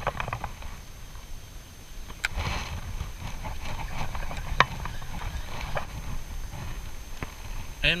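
A few scattered sharp clicks and knocks from handling a light spinning rod and reel, over a steady low rumble of wind and water on the microphone.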